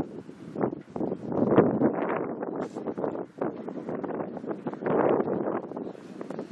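Wind buffeting the camera microphone in uneven gusts, surging loudest about a second and a half in and again about five seconds in.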